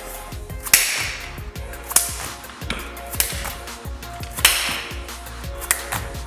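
Explosive clap push-ups: sharp slaps of hands clapping in the air and palms landing on a rubber gym floor, one loud crack every second or two, with a lighter one near the end. Faint background music runs underneath.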